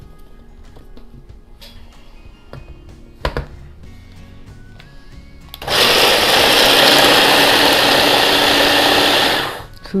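Stick blender with a chopper attachment grinding walnuts: the motor starts about halfway in, runs loudly and evenly for about four seconds, then stops sharply. A single knock comes a few seconds before it starts.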